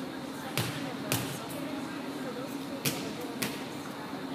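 Volleyballs being struck during practice: four sharp smacks in two pairs, each pair about half a second apart, over a steady hum.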